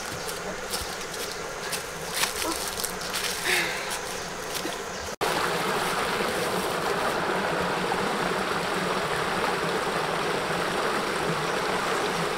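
Rustling and crackling of a person moving through dry brush and undergrowth, over a steady outdoor background. After an abrupt cut about five seconds in, a small rocky stream runs and splashes steadily over stones.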